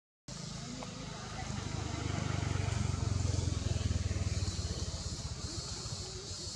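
A motor vehicle engine passing by: a low rumble that swells about two seconds in and fades away by about five seconds, over a steady high hiss.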